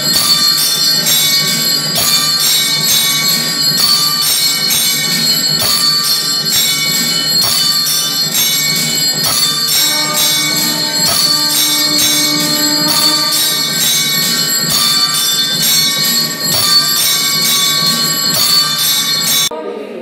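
Temple bells ringing rapidly and without pause through the puja, a dense clanging rhythm of several strikes a second. It stops abruptly just before the end.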